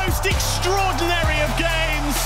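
Background music with a steady bass line and a melody that bends and glides in pitch, with a low falling sweep about a third of a second in and again just after a second.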